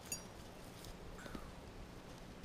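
Quiet background with a few faint, light clicks from small metal hardware being handled.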